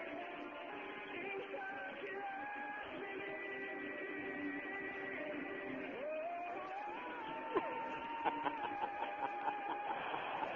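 A male pop singer sings live, without playback, over band backing with guitar. About six seconds in his voice glides up to a long held high note. The recording is played down a radio line, so it sounds thin and narrow.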